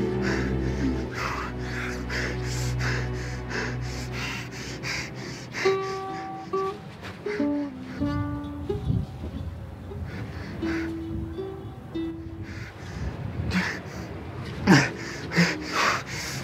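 Background film music with sustained chords and a steady beat, giving way about five seconds in to single plucked ukulele notes picked one by one as a slow melody.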